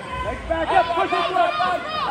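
Raised voices shouting from the sideline, with a low dull thump near the start.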